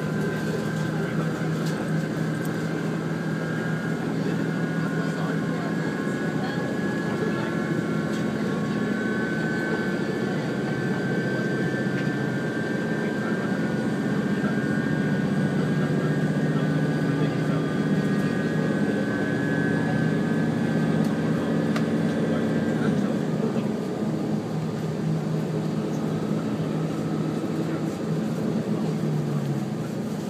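Cabin sound of a JR Shikoku 2000 series diesel express train running along the line: continuous rolling noise with the steady hum and whine of the underfloor diesel engine and transmission. The hum and whine ease off about three-quarters of the way through as the power drops.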